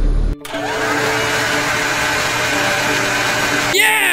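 Edited sound effects: a low rumble cuts off just after the start, then a steady whooshing hiss with faint tones in it. Near the end come swooping whistle-like glides that rise and fall in pitch, matching a flashing effect as the toy truck's side opens.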